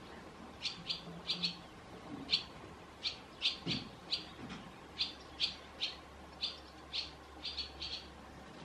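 Barn swallows calling: short, sharp chirps repeated every half second or so, often in quick pairs.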